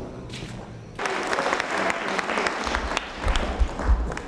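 Audience applauding, breaking out suddenly about a second in, with a few low thumps near the end.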